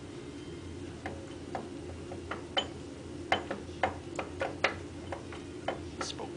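Irregular light metallic clicks and knocks, about a dozen, as a cast-iron bracket on a Hendey lathe headstock is rocked and worked loose by hand, starting about a second in, over a steady low hum.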